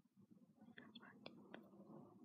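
Near silence with a few faint small clicks about a second in: a clip-on earring being handled and fastened at the ear.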